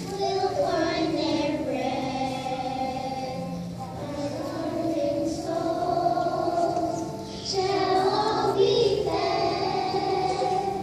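Children's choir singing in long held notes, with short breaks between phrases about four seconds in and again just past seven seconds.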